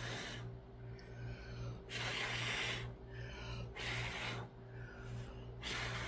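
A person blowing hard by mouth onto wet pour paint, long breathy puffs about every two seconds with shorter breaths drawn in between. The blowing pushes the paint outward into a flower-like bloom.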